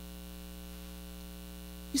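Steady electrical mains hum: a low tone with a stack of higher, buzzing overtones, holding at an even level.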